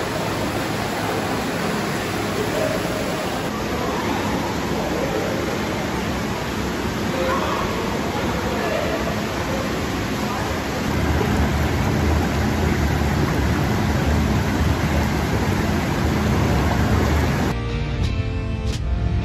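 Steady rush of splashing water from an indoor pool fountain, giving way about eleven seconds in to the deeper churning of hot tub jets. Music comes in just before the end.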